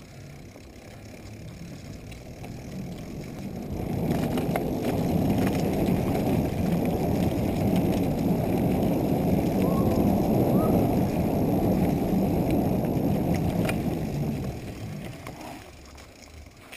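Mountain bike rolling fast down a dirt forest trail: low rumble of tyres and wind buffeting the handlebar camera's microphone. It builds over the first few seconds as speed picks up and eases off near the end, with a few faint clicks from bumps.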